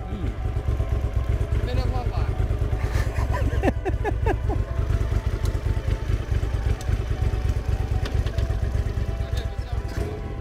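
Honda CX 650 cafe racer's V-twin engine idling steadily, a low pulsing rumble, with voices talking and laughing over it a few seconds in.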